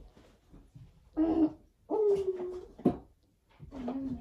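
A woman moaning and groaning as if in pain from menstrual cramps, which are faked: a short moan about a second in, a longer drawn-out one at a steady pitch just after, and another near the end, with breathy gasps between.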